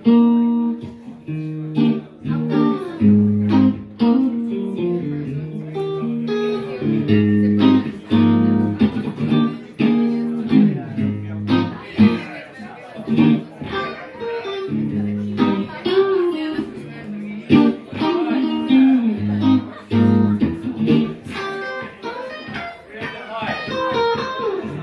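Electric guitar played solo, picking a slow, repeating pattern of plucked notes and chords as a song's instrumental intro.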